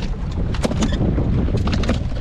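Queenfish flapping on a fishing boat's deck, a few sharp slaps in two clusters, over the boat's steady low rumble and wind on the microphone.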